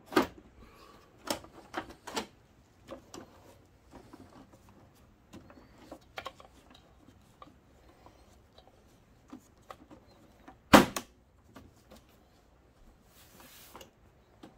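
Plastic top cover of a Digital Projection dVision 30 XL projector being seated and pressed into place by hand. Scattered clicks, light knocks and rubbing, with one much louder knock or snap about eleven seconds in.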